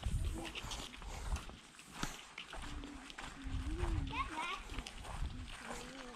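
Faint, distant children's voices along with scattered footsteps on a paved path and an irregular low rumble.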